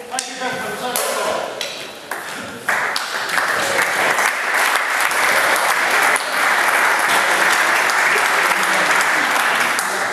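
Audience applauding, starting abruptly about three seconds in and then steady. Before it come voices and a few short knocks.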